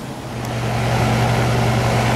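Outdoor air-conditioning condenser unit running in cooling mode: a steady low hum with a rush of fan air over it. It comes in and grows louder about half a second in.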